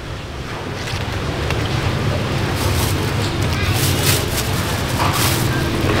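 A low, steady engine rumble that slowly grows louder. Over it, a thin plastic food bag crinkles in several short bursts in the second half as it is filled and handed over.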